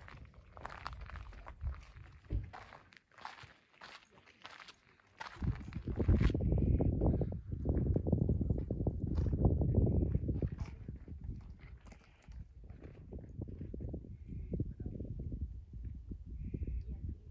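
Footsteps on a dirt and gravel path, uneven short steps over the first few seconds. From about five seconds in a louder, steady low rumble takes over, easing off near the end.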